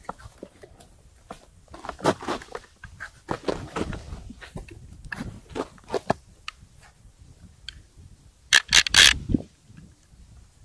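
Close handling noise from a small ice-fishing rod with a plastic reel, the fishing line and the angler's clothing: scattered scrapes and clicks, with a louder cluster of scraping knocks near the end.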